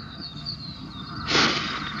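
Old film soundtrack in a pause between lines: faint chirping of crickets over the track's background hiss, with one short, loud hissing burst about a second and a half in.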